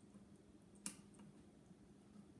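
Near silence: faint room tone with a low steady hum and one short, sharp click about a second in.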